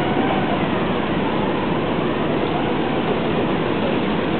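Steady rumbling noise of a vessel under way, its engines and water churning as it moves slowly out of the lock.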